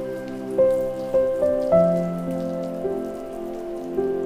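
Granules of potting soil pattering as they are sprinkled into a bonsai pot, like light rain, under gentle instrumental music whose held notes are the loudest sound and change several times.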